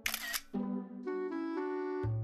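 Smartphone camera shutter click at the very start, followed by background music playing a short melody of stepping notes.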